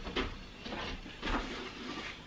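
A window cleaner scrubbing the window glass from outside, about three short brushing strokes in two seconds.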